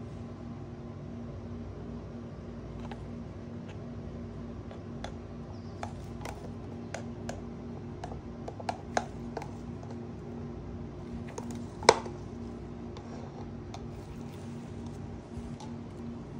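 Light clicks and taps of a plastic cup and wooden stir stick as coloured resin is poured from the cup, with one sharper knock about twelve seconds in. A steady low hum runs underneath.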